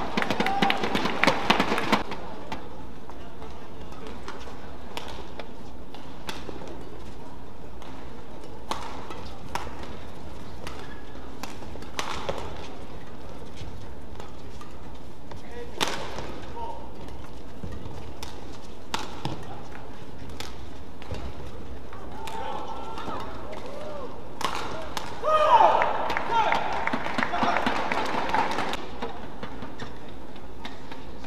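Badminton rackets striking the shuttlecock in rallies: sharp single cracks every one to three seconds, with quiet stretches between points. Voices shout briefly at the start and again, louder, for a few seconds near the end.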